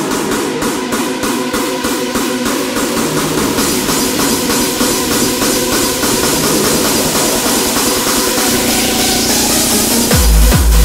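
Hardstyle dance track in a build-up: a repeating synth riff plays without the kick drum, while a rising noise sweep swells over it toward the end, leading into the drop.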